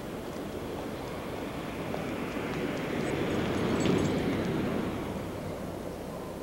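A dense rushing noise that swells to a peak about four seconds in and then fades away, with a few faint high ticks.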